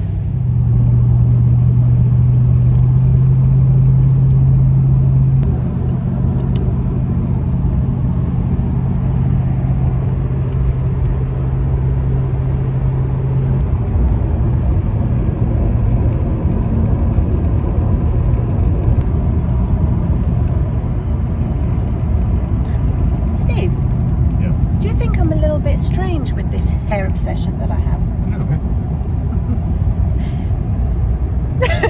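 Road noise inside a moving car's cabin: a steady low rumble of engine and tyres. A louder low drone sits over it for the first dozen seconds or so and drops away about halfway through.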